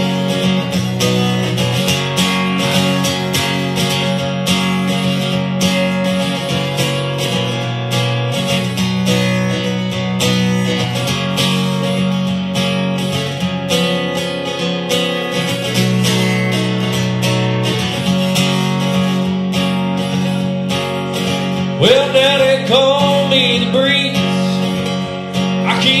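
Acoustic guitar played solo through an instrumental break in a blues-rock song, with a steady strummed chord rhythm under picked lead notes. Singing comes back in right at the end.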